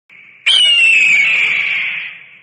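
A bird of prey's screech used as an intro sound effect: one long, high cry that starts suddenly about half a second in, falls slightly in pitch and fades out with an echo over a low rumble.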